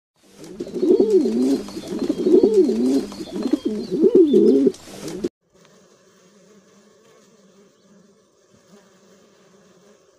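Feral pigeons cooing: repeated low, rolling coos that stop abruptly about five seconds in. A faint, steady honeybee buzz follows.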